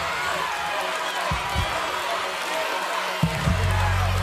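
Suspense music of a results reveal: pairs of low drum thumps like a heartbeat over the studio audience's shouting. About three and a half seconds in, a loud low sustained note swells in.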